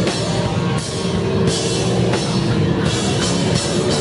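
Live hardcore punk band playing loud and fast: distorted electric guitar and bass over a drum kit, with cymbal crashes about every second or so.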